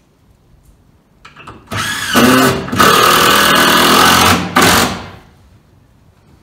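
Power drill winding up about two seconds in, then running loudly for about three seconds with two brief breaks, as when driving a screw, and stopping.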